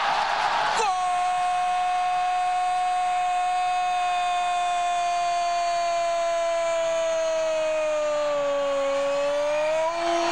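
Brazilian football TV commentator's long goal shout, 'gooool', held as one sustained note for about nine seconds, dipping slightly in pitch and rising again just before it ends. It opens over about a second of loud crowd noise as the goal goes in.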